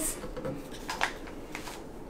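Power cord of an aquarium air pump being uncoiled by hand: light rustling and rubbing with a few soft clicks.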